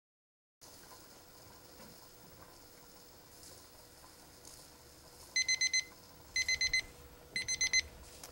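Digital kitchen timer sounding its alarm as its countdown reaches zero: quick bursts of about four short beeps at one steady pitch, one burst a second, starting about five seconds in. It signals that the pressure canner's timed processing is complete.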